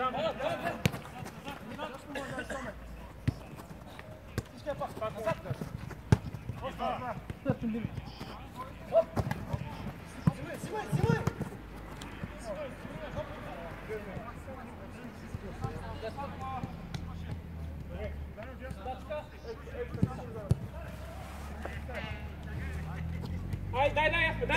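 Players calling out to each other on a small-sided football pitch, with sharp thuds of the ball being kicked now and then.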